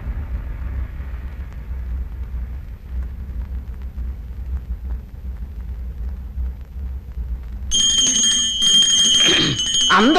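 Film soundtrack: a steady low rumble for most of the stretch, joined near the end by a high, sustained ringing tone like a dramatic sound effect.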